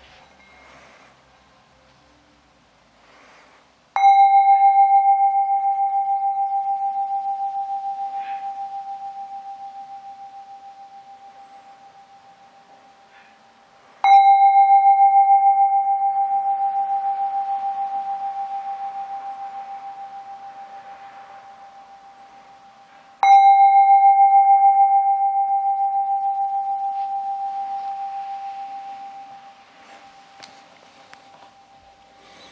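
A small hand-held singing bowl struck three times with a padded mallet, about ten seconds apart, each strike ringing out as one clear, slowly pulsing tone that fades gradually; the third ring dies away faster just before the end. Faint handling knocks come before the first strike. It is struck to open a period of quiet sitting meditation.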